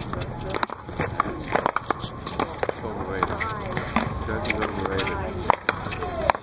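Paddleball rally: a rubber ball struck by paddles and rebounding off a concrete wall and court, giving a run of sharp, irregular smacks, with voices talking in the background.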